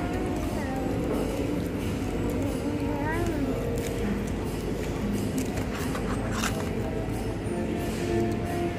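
Fast-food restaurant dining-room noise: indistinct background voices and music over a steady hum, with a few short clicks and rustles from the second half onward.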